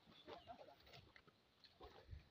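Near silence: faint outdoor ambience with a few brief, faint sounds.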